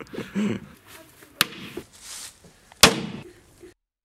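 Two sharp strikes of a small metal hammer on a tempered glass panel, about a second and a half apart, the second louder with a brief ringing tail; the glass does not break.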